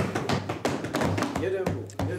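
Rapid, irregular knocking of hands thumping on wooden desks, with voices mixed in near the end.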